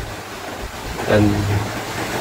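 Mostly speech: a man's voice says one drawn-out word about a second in. Under it runs a steady outdoor background rush, in keeping with wind and distant surf.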